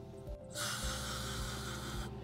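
Steady hiss from dental equipment, starting about half a second in, over background music with a slow, even beat.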